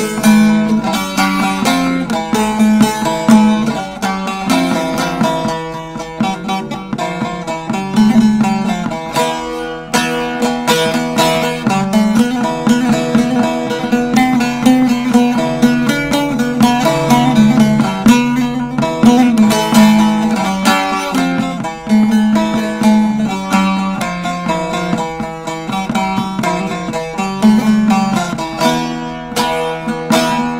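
Solo bağlama (Turkish long-necked saz) played as an instrumental introduction to a folk song: a quick plucked melody over steady lower notes.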